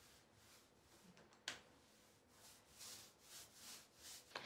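Near silence, with faint soft strokes of a small paint roller spreading water-based stain over a butcher-block wood countertop in the second half, and a single soft click about one and a half seconds in.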